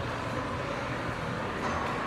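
Steady background din of a large indoor shopping mall, with no distinct events. A faint steady tone comes in near the end.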